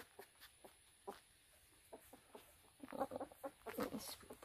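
Short animal calls, scattered at first, then a quick run of them about three seconds in.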